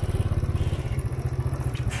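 A motorbike engine running at low road speed, heard from the rider's own seat, a steady low throb with rapid pulsing.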